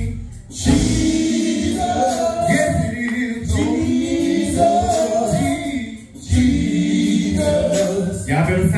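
Male gospel vocal group singing long held notes in harmony, with two short breaks between phrases, about half a second in and about six seconds in.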